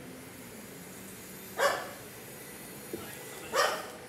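A dog barking twice, single barks about two seconds apart.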